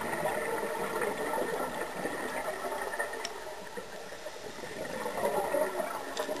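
Scuba exhaust bubbles heard underwater, a bubbling, crackling rush that swells at the start and again near the end, with each exhalation through a regulator.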